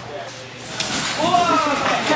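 A person landing on a padded gym mat with a single thump a little under a second in, followed by a voice.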